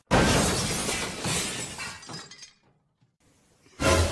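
Glass shattering: a sudden crash with pieces scattering and dying away over about two and a half seconds.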